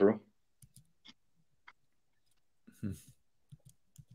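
A man's voice trailing off on a word, then a lull with a few faint, scattered clicks and a brief murmur a little before three seconds in.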